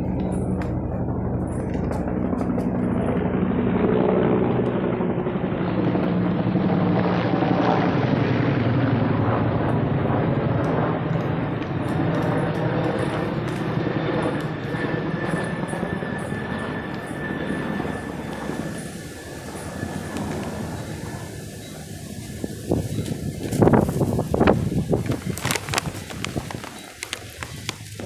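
A helicopter flying overhead, its rotor and engine drone growing louder, then slowly fading as it passes. A few sharp thumps of wind or handling on the microphone come near the end.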